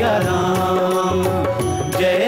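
Indian devotional kirtan music: a wordless passage with a gliding melody line over steady low accompaniment.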